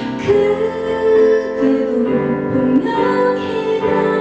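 A woman singing a slow song into a microphone with long held notes, accompanying herself on a Kurzweil PC1x stage piano.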